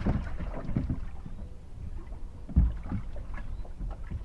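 Small waves slapping against a bass boat's hull, over a low rumble of wind on the microphone, with a heavier dull thump about two and a half seconds in.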